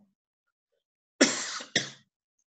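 A person coughing twice in quick succession, the first cough longer than the second.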